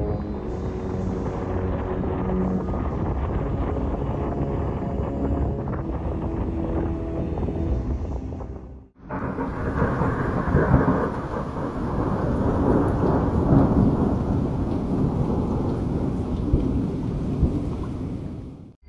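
Steady rushing rumble of a severe storm, cut off abruptly about halfway. Then rolling thunder from lightning over a volcano's summit, with a couple of louder peaks.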